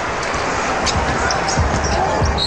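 Steady arena crowd noise, with a basketball being dribbled on the hardwood court as the ball is brought up in transition.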